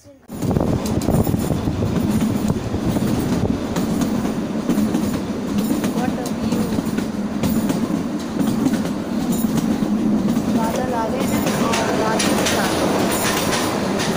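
Narrow-gauge toy train running, heard from inside the carriage: a loud, steady rumble of wheels on the rails with scattered clicks from the track, starting suddenly.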